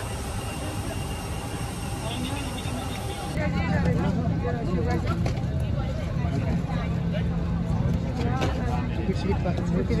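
Passengers' voices chattering in an airliner cabin over a steady low cabin hum, the hum louder after about three seconds in.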